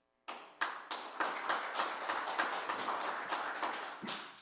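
Congregation applauding: many hands clapping at once, starting about a quarter second in and tapering off near the end.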